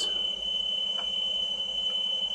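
Steady 3 kHz test tone from a Betamax alignment tape, played back by a Sanyo VTC9300P Betacord VCR and heard through a television's speaker. It is the tape's reference tone, used to check that the machine plays back correctly.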